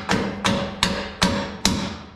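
Soft-faced hammer striking a bolt five times in an even rhythm, a little over two blows a second, driving it through a front control-arm mount on a steel tube race-car chassis.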